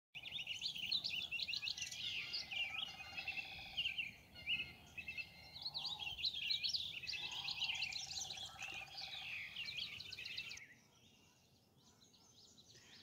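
Several songbirds singing and chirping together in a dense chorus, with a lower rapid trill heard twice. The chorus cuts off sharply about ten and a half seconds in, leaving only a faint background.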